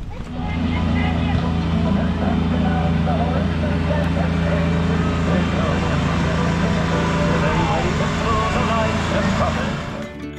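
Small engine of a ride-on kids' tractor train running at a steady, even pitch, with children's voices over it.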